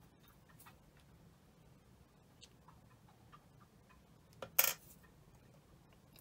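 Faint scattered ticks and taps of small tools and a clay piece being handled on a craft mat, with one sharp, louder click about four and a half seconds in.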